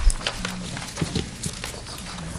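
A low thump at the start, then scattered light knocks and rustles of papers and small objects being handled on a council table, picked up by the table microphones.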